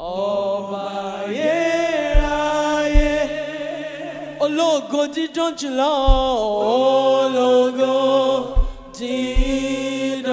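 Gospel worship music: a voice singing long held notes that bend and slide, over a sustained low accompaniment, with a few short low thuds.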